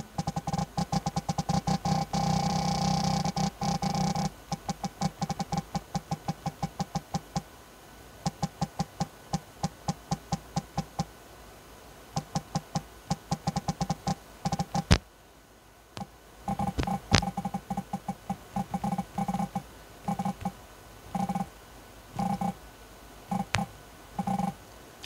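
Realme GT Neo 2's haptic vibration motor giving a short buzz with each keystroke as someone types quickly on its on-screen keyboard, picked up by a microphone lying on the screen. The buzzes come in rapid runs with short pauses, almost continuous in the first few seconds, and two sharper clicks stand out around the middle.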